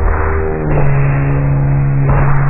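A ska-punk band's recording slowed to one percent of its speed, stretched into a dense drone of held tones with a hiss above them. A strong low tone comes in about a third of the way in.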